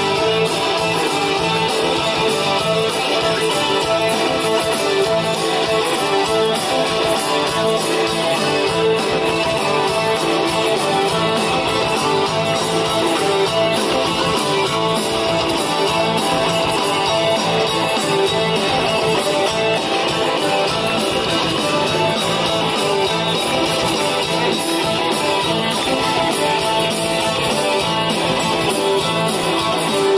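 Live rock band playing an instrumental passage: electric and acoustic guitars strumming with a bowed violin, loud and steady throughout.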